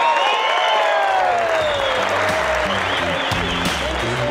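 Audience applauding at the end of a song, with a few cheers in the first couple of seconds. About halfway through, the band starts playing low notes under the applause.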